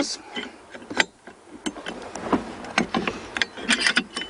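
Scattered sharp metal clicks and clinks, with a quick run of them near the end, as a quick-release pin is slipped into a boom clamp's height adjuster and seated.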